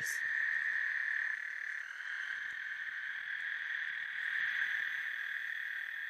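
A chorus of frogs calling: a steady, high-pitched trilling drone. A second, higher-pitched layer of calls joins about two seconds in.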